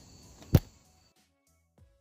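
A single loud, sharp thump about half a second in, then near silence with faint steady low tones.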